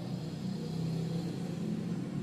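A low, steady rumble or hum in the background.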